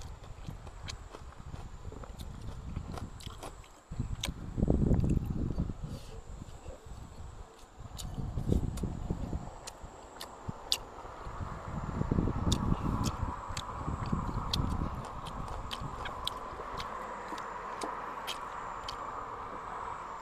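Close-up chewing of boiled pork, wet and smacking with sharp mouth clicks throughout. Heavier spells of chewing come about four, eight and twelve seconds in. A steady faint hum joins about halfway.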